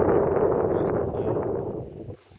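Wind rushing over the microphone, a steady noise that fades near the end.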